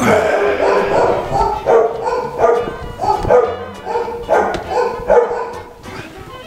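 A dog barking repeatedly, about two short barks a second, fading near the end.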